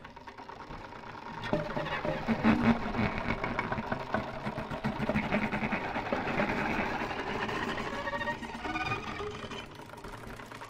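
Improvised violin through electronic effects: a dense, rapidly pulsing texture with pitched lines. It grows louder about a second and a half in, and has short rising glides near the end.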